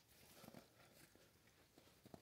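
Near silence: quiet outdoor air with a few faint soft ticks.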